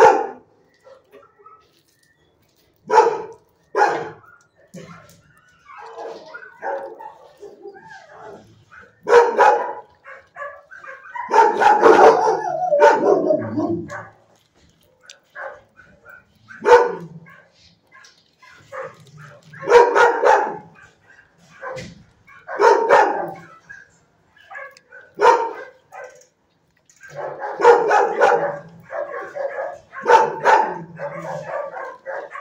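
Shelter dog barking in a kennel block, single barks and short volleys every few seconds, with a longer run of barking around the middle and again near the end.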